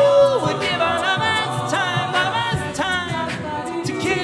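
A cappella ensemble singing live, voices only. A long held sung note ends with a downward slide just after the start, then the voices carry on with shifting sung lines.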